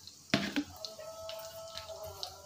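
Turmeric and chilli powder crackling faintly in hot oil in a nonstick pan, with scattered small pops and a sharp click about a third of a second in.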